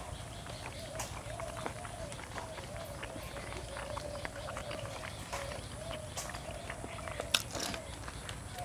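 Close mouth sounds of a person eating pork belly: chewing clicks and lip smacks, with a couple of sharper clicks near the end. A faint call repeats about twice a second in the background.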